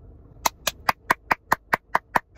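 A person's wheezy laugh: a fast, even run of short breathy pulses, about four to five a second, starting about half a second in.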